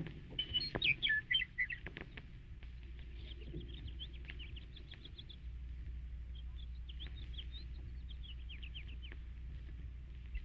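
Birds chirping over and over in short high calls, thickest in the first two seconds, with a few faint clicks. A low steady hum comes in a few seconds in.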